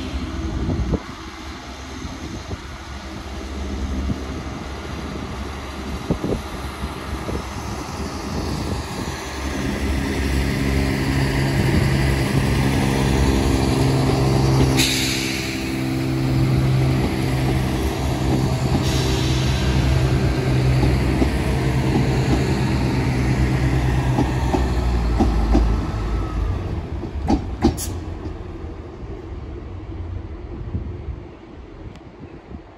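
Chiltern Railways Class 168 diesel multiple unit pulling out and passing, its diesel engines running steadily under power. The engine sound is loudest through the middle and fades near the end, with a couple of sharp clicks just before it dies away.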